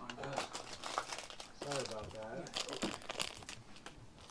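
Gift-wrapping paper crinkling and crackling as a wrapped present box is handled, in a string of quick crackles, with a brief murmur of a woman's voice about halfway through.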